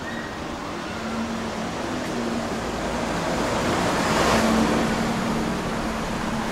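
Street traffic: a motor vehicle's engine hum and tyre noise swell as it passes, loudest a little over four seconds in.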